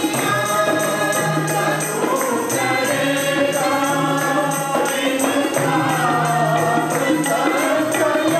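A mixed group of men and women singing a Punjabi psalm (zaboor) together, accompanied by a harmonium's sustained reed tones and a steady percussion beat.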